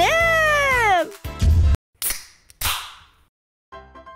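A woman's long, tearful wail, the drawn-out end of a cry of "사장님", rising and then falling in pitch and cutting off about a second in. A low thump and two whooshing transition effects follow, and soft background music begins near the end.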